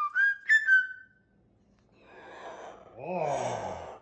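Moluccan cockatoo whistling a few short, level notes in the first second, each starting with a sharp click. After a pause comes a low, falling, voice-like 'oh' near the end.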